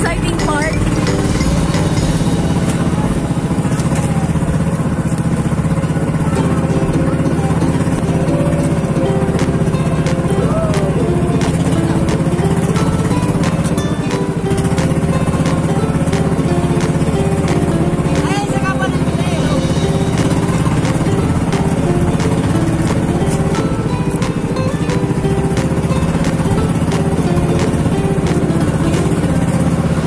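Engine of a motorized outrigger boat running steadily while under way: a constant low drone with a fast, even clatter.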